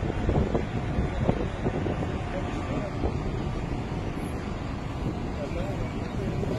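Steady, uneven low rumble of wind buffeting a phone microphone, with faint, indistinct voices in the background.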